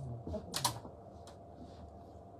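A few light clicks and taps, two close together about half a second in.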